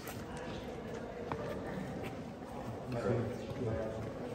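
Indistinct chatter of several people talking in the background, a little louder about three seconds in, with faint footsteps of people walking on stone paving.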